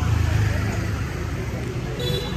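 Road traffic: a low, steady rumble of passing vehicles.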